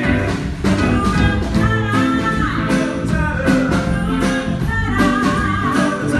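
A male singer performing a song live through the stage sound system, backed by a live band with piano and drums.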